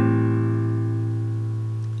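A single strummed A minor 7 chord on a nylon-string classical guitar, ringing out and slowly fading.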